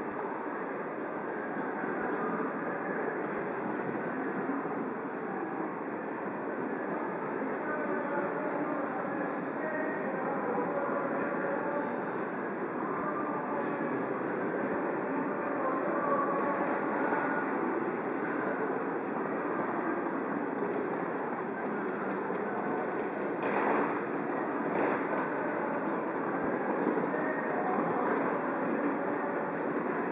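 Steady street din of a busy pedestrian crossing: the murmur of a large crowd's voices over a continuous low rumble of city traffic and trains. Two short, sharp sounds about a second apart come in the last third.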